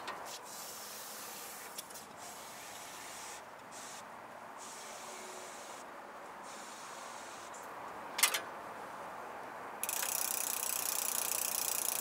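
A GUP flat-repair canister, which combines tyre sealant and compressed gas, hissing as it is pushed onto the valve and discharges into a flat mountain-bike tyre to reinflate and seal it. There is a short click about eight seconds in, and the hiss turns suddenly louder and sharper near the end.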